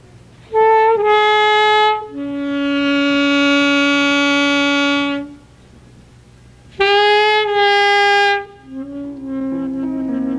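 Unaccompanied alto saxophone playing slow, held notes in a rubato opening phrase, including one long low note, then a pause and a second phrase. Piano chords come in under the saxophone near the end.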